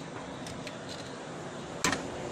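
Light handling sounds of hands working inside a desktop PC case over a steady hiss, with a couple of faint clicks and one sharp click near the end.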